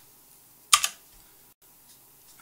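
A computer keyboard key struck once, a sharp clack about three quarters of a second in, entering a typed value in CAD software; faint room hiss otherwise.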